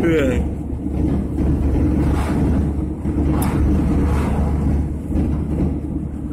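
Steady road and engine noise inside a moving car's cabin, a constant low rumble.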